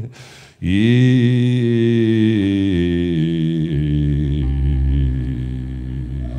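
Live country band music: after a brief dip near the start, a long held low note sounds, and bass and drums come in about four seconds in.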